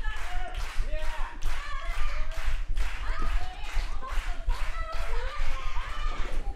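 Wrestling match audio: a crowd clapping in a steady rhythm, about two to three claps a second, under high-pitched voices.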